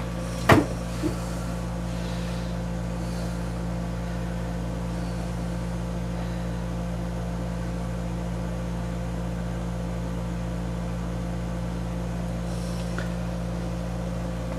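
Steady low mechanical hum of room machinery with several constant tones, and one sharp knock about half a second in, followed by a faint tap.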